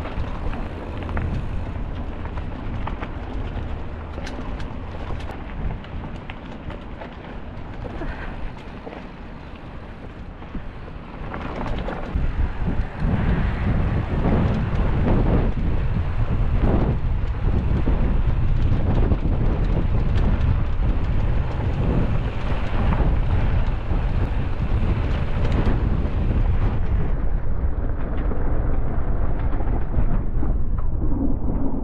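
Wind buffeting a camera microphone on a mountain bike riding a dirt trail, with the rumble of the tubeless tyres and scattered rattles and clicks from the bike over bumps. It gets louder from about twelve seconds in, as the ride picks up speed.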